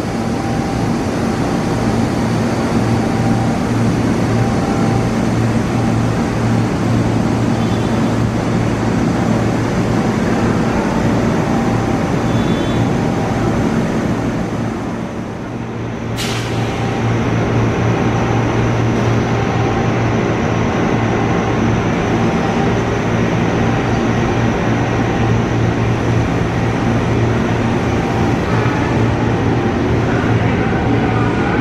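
Diesel engine of an INKA CC 300 diesel-hydraulic locomotive running steadily with a low hum. A single sharp click comes just after the middle.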